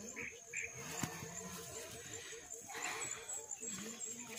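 Faint, indistinct voices of a group of hikers walking single file, with footsteps through grass and a thin steady high-pitched tone behind them.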